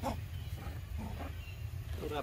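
Long-tailed macaques giving a few short, faint calls over a steady low rumble.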